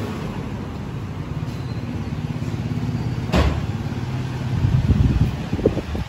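A motor vehicle engine idling steadily, with one sharp click about three and a half seconds in.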